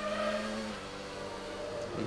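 Formula One car's Mecachrome V10 engine running at a steady note as heard from its onboard camera, the car driving back onto the track after a spin. The engine note eases a little under a second in.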